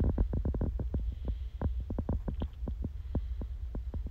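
Low wind rumble on the microphone, with a run of rapid, irregular crackles over it.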